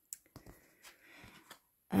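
Tarot cards being handled and set down on a tablecloth: a few faint, soft ticks and a brief light brushing sound.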